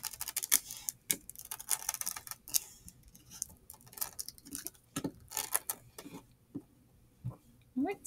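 Fingers rolling a sheet of honeycomb-textured beeswax around a wick on a wooden tabletop: irregular soft clicks, crackles and rustles of the wax and skin against the table, thinning out after about six seconds to a couple of light knocks near the end.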